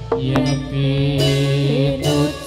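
Javanese gamelan music for a jathilan dance: sustained low metallophone or gong tones under a wavering sung line, with a few sharp percussive strokes.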